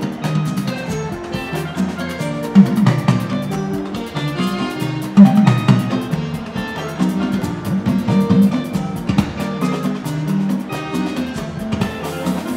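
Live fuji band music: drums and percussion keep a busy beat, with bass and guitar playing over it.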